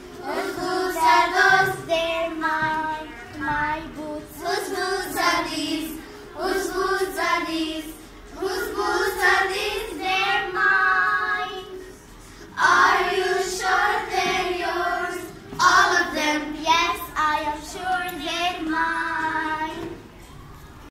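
A group of young girls singing together in short phrases, with a brief pause about twelve seconds in.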